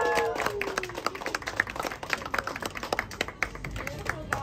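A small group of people clapping, with many scattered claps. The tail of a cheer dies away in the first second.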